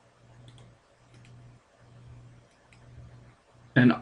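A few faint computer mouse clicks, spaced about a second apart, over a faint low hum. A man's voice starts right at the end.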